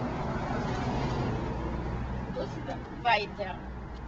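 Street traffic: a motor vehicle's low engine hum that fades about two seconds in, followed by a person's voice speaking near the end.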